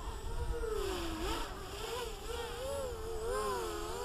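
Quadcopter motors whining in flight, the pitch rising and falling again and again as the throttle changes, over a low rumble.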